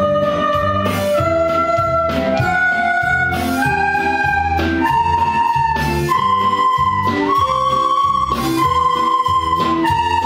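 A class of soprano recorders playing the C major scale in unison, one held note about a second each, climbing step by step to high C and starting back down near the end. A guitar strums an accompaniment underneath.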